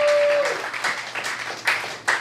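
Small audience applauding and clapping, thinning out toward the end. One long held cheer sounds over the clapping for the first half second.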